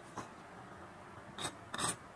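Steel kitchen knife on a wooden cutting board: a light tap of the blade about a quarter-second in, then two short scrapes near the end as the blade is drawn across the board, clearing the sliced mango off it.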